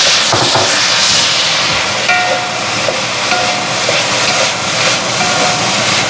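Fried rice sizzling in a hot wok with soy sauce just added, while a wooden spatula stirs and scrapes it round the pan; the hiss of the frying runs steadily throughout.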